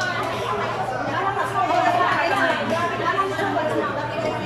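A group of people talking at once: overlapping conversational chatter, with no single voice standing out.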